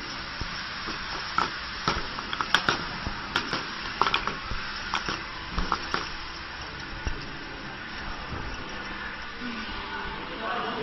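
Light, sharp clicks and knocks of small plastic bottles, a dozen or so, coming irregularly and mostly between the first and seventh second, as the flat plastic dropper bottles are handled and knock against each other and the table. Under them runs a steady hiss.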